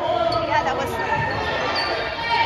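A basketball bouncing on a hardwood gym floor among raised voices calling out, echoing in a large gymnasium.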